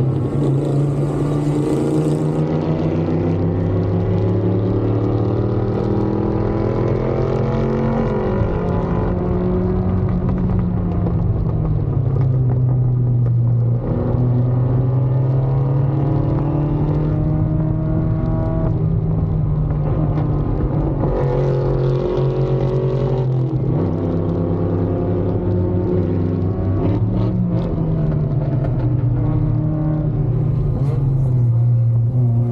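Mazda Miata race car's four-cylinder engine heard from inside the cabin under racing load, its note climbing and dropping back several times as it revs through the gears and slows for corners.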